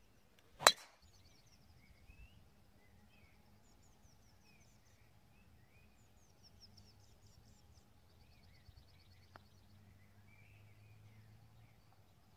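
A golf club strikes a ball off the tee with one sharp crack about a second in. Faint birdsong follows, with a soft tap of a putt about nine seconds in.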